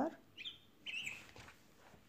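A small bird chirping twice, about half a second apart. Both calls are short and high; the first sweeps upward.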